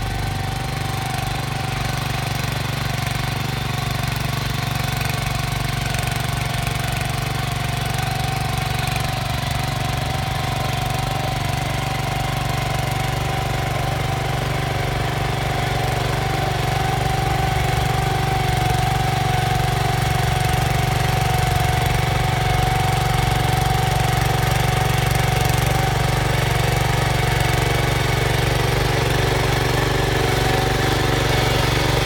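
Small walk-behind power tiller's engine running steadily while its tines work the soil, with a constant hum. It gets a little louder about halfway through.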